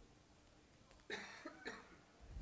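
Near silence, broken about a second in by a faint cough of two quick bursts.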